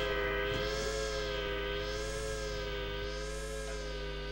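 Background music: a held synthesizer chord with a gentle waver and a slow, repeating sweep in its upper tones, fading slightly, over a low steady hum.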